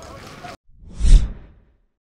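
A whoosh sound effect for a logo end card: a rush of noise swells, peaks with a deep bass hit about a second in, and fades away within half a second.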